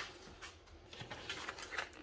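Faint handling noise: a short knock right at the start, then a few soft taps and rustles as a hand touches a wooden workbench and the bar clamps lying on it.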